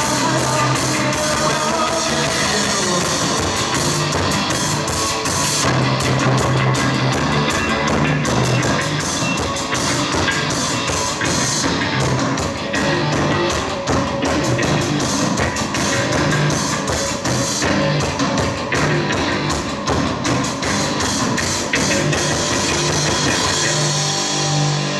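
Post-punk band playing live: drum kit and electric guitar over a pulsing bass line, in a passage without singing.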